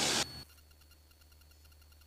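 Hiss of an open cockpit intercom channel cuts off suddenly about a quarter second in, then near silence with only a faint low hum.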